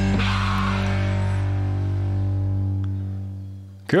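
Punk band recording ending on a held electric guitar and bass chord that rings on, then fades and dies away near the end.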